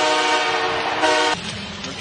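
Hockey arena goal horn sounding one long, steady note for a home-team goal, cut off abruptly just over a second in.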